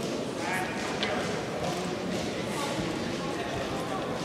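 Indistinct voices and chatter echoing in a large sports hall, with scattered light knocks.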